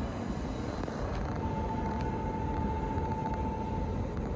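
Steady low rumble of distant trains and city traffic around a large rail station, with a steady high tone joining about a second and a half in.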